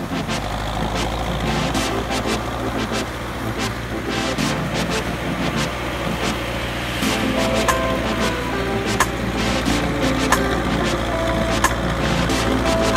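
Tractor's diesel engine running steadily as it drives along the surf line toward the listener, with small waves washing in. Music comes in about seven seconds in.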